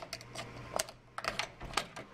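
Irregular clicks and short scrapes of a door latch being slipped with a scrap of cardboard worked between the door and its frame. The electric strike plate's oversized hole leaves the latch shimmable.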